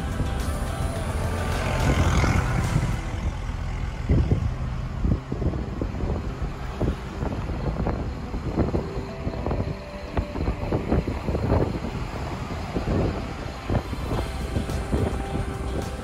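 Cab interior noise of a BharatBenz truck driving at road speed: steady engine and road rumble with irregular knocks and rattles, under background music.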